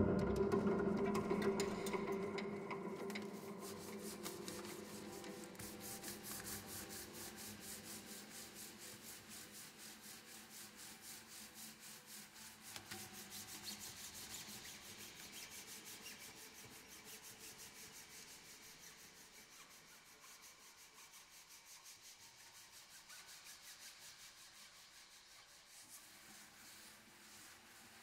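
Strings inside an open grand piano being rubbed in fast, even back-and-forth strokes, a faint rasping that slowly dies down. It starts as the ringing of the piano's last notes fades away.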